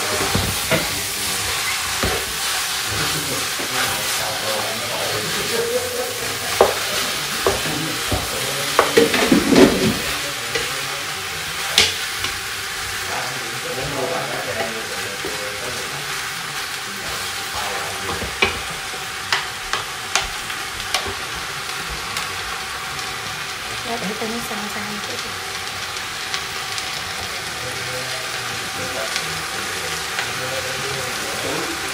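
Two wooden spoons stirring a large pot of curry over the heat, with a steady sizzle from the pot and scattered knocks of the spoons against it, bunched a few seconds in and again past the middle.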